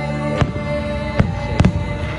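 Fireworks aerial shells bursting: three sharp bangs about a second apart, the last a quick double, over music playing steadily underneath.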